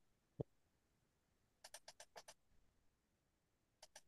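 Near silence. A faint low thump comes about half a second in, then a quick run of about six keyboard clicks in the middle and two more near the end.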